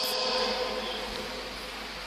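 A steady electrical buzz made of several even tones. At the start it sits under the echo of a man's voice fading away in a hall.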